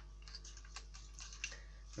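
Faint, irregular clicks from a cordless drill's keyless chuck being handled and turned by hand.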